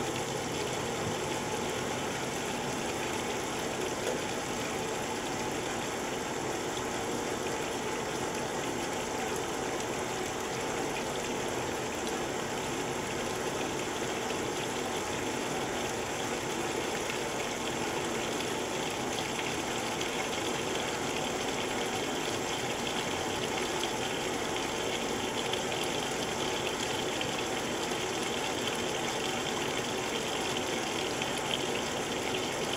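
Montgomery Ward Signature 2000 top-load washer filling with water: a steady rush of water spraying from the fill inlet down onto the clothes in the tub.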